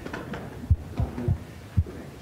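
Hands patting backs during hugs: four dull, low thumps at uneven spacing.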